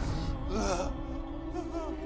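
A man's pained gasps and moans from being flogged: two short wavering cries, about half a second in and again near the end, over soft sustained film-score music.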